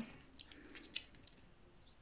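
Faint handling noise: a few small clicks and ticks of fingernails on a plastic lip gloss tube, mostly in the first second, with one more soft tick near the end.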